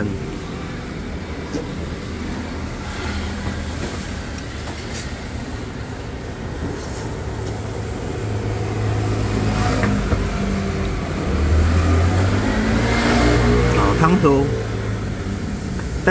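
Road traffic: a low, steady rumble of motor vehicles that grows louder in the second half as a vehicle passes close by.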